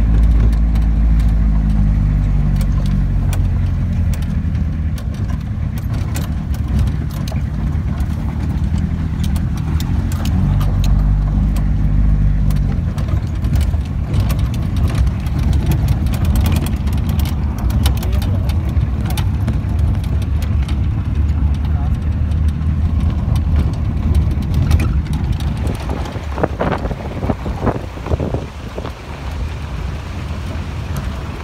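Vehicle engine running with road noise, a steady low hum that gives way to a rougher rushing noise about halfway through.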